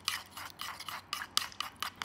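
A utensil scraping and clinking round a bowl in quick repeated strokes, several a second, as a thick homemade face cream is whisked and stirred.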